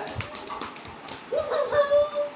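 A woman's short, high-pitched whimpering cry about one and a half seconds in, in mock pain as her hair is tugged, after some breathy laughter.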